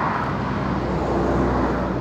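Steady rumble of a motor vehicle, growing slightly louder.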